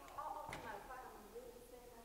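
Faint, off-microphone talking in a room, with a brief click about half a second in.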